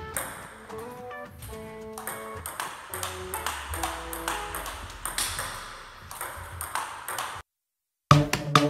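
Table tennis ball clicking off bats and table in a quick back-and-forth rally, heard over background music with held notes; everything cuts off suddenly near the end.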